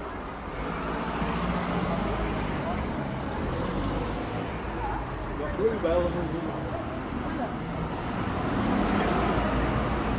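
Street traffic: cars and double-decker buses running along a town-centre street, a steady engine hum under the general road noise.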